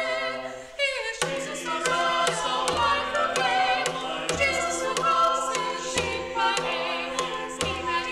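Small mixed choir of men and women singing a cappella, several voices together with vibrato. Sharp percussive taps and a recurring low note sound behind the voices.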